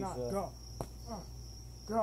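Crickets trilling steadily at a high pitch, under snatches of a voice, with one sharp smack a little under a second in.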